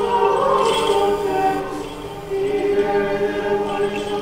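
Church choir singing Orthodox liturgical chant a cappella in sustained chords, with a short pause between phrases about halfway through.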